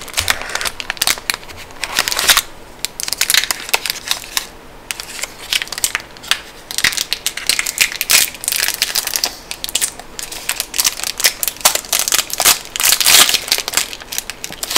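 A Toblerone bar being unwrapped close to the microphone: its cardboard box and foil wrapper crinkle and crackle in uneven bursts of sharp, dense crackles.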